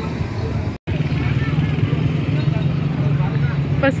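Outdoor crowd chatter over a steady low hum, broken by a brief dropout about a second in; a man starts talking right at the end.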